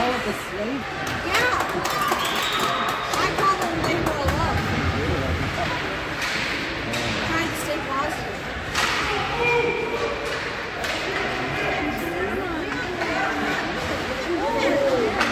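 Ice hockey play in an echoing indoor rink: indistinct shouting voices of players and spectators, with repeated sharp clacks and thuds of sticks and puck against the ice and boards.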